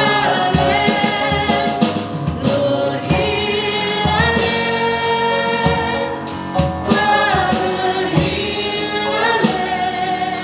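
Worship band playing a slow gospel song: male and female voices singing together in harmony over keyboard and drums, the notes held with vibrato.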